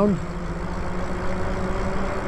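Steady wind and road noise of a Lyric Graffiti e-bike cruising along a paved street, with a faint steady hum underneath.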